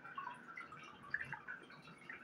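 A person sipping hot coffee from a cup: a few faint, small liquid and mouth sounds.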